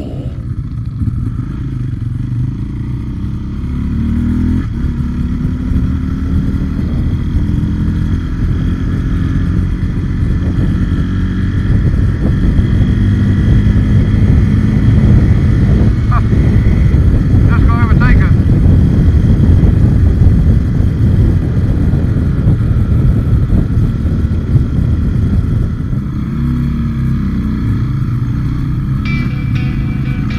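Trail motorcycle engine running under way, heard from the rider's own bike, its revs rising and falling with the throttle, with wind rumble on the microphone. It grows louder through the middle.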